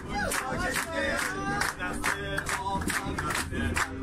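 A group of people singing and shouting together to rhythmic hand-clapping, about three claps a second.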